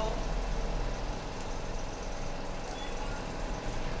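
Steady background noise with a constant low hum, with no distinct event standing out.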